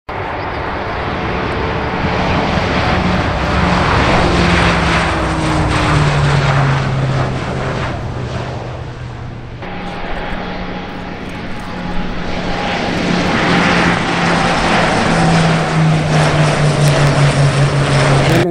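Grumman E-2C Hawkeye's twin turboprop engines running at high power as it takes off and flies past: a steady propeller drone over a loud rushing noise, its pitch dropping as the aircraft passes about six seconds in. The sound dips briefly about nine seconds in, then builds again and throbs near the end.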